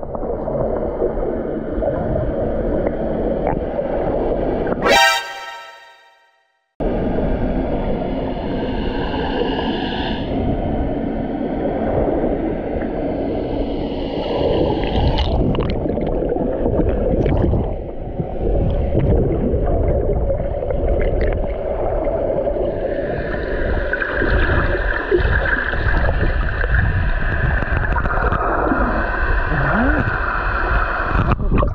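Muffled underwater noise picked up by an action camera held under the lake surface: water sloshing and gurgling against the housing over a dense low rumble. About five seconds in there is one sharp click, then the sound fades and cuts out for under a second before resuming. A faint steady high tone comes in over the last third.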